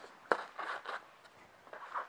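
A sharp knock, then several short scraping rubs as black foam blocks are pushed along a metal hoist-frame arm, with another rub near the end.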